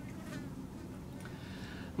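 Faint steady buzzing of a flying insect, such as a fly, in a pause between speech.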